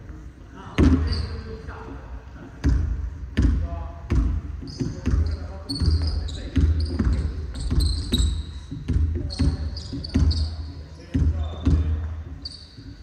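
Basketball bouncing on a hardwood court, with an echo from a large hall: scattered bounces at first, then a steady dribble of about two bounces a second. Sneakers squeak on the floor through the second half.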